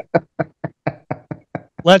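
A man laughing in short, separate bursts, about four a second, that fade a little toward the end.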